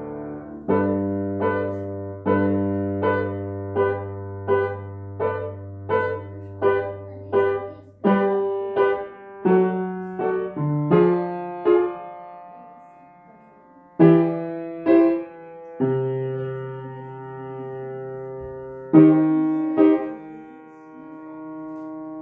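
Solo piano playing a slow piece: single melody notes struck about every three-quarters of a second over a held low bass for the first half. After a soft lull, a few louder chords are struck and left to ring.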